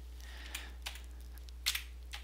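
Computer keyboard keys clicking: three separate keystrokes with gaps between them, the last the loudest near the end, over a steady low hum.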